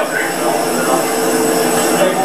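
Steady machinery drone at an airliner's boarding door, with several held tones over a hiss and faint voices under it.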